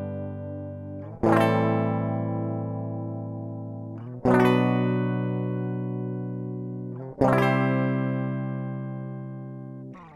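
Electric guitar played through a Warman Zebra bridge humbucker: full chords struck three times about three seconds apart, each left to ring out and fade.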